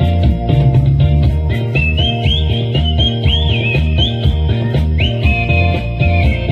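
A solo whistler's melody over a backing track with a steady beat and bass, played through the stage PA. The high whistled line comes in about two seconds in and moves in short notes with quick upward scoops between them.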